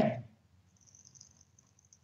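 A spoken word trails off at the very start, then near silence: only a faint low hum and a faint high hiss on a Skype call's audio feed.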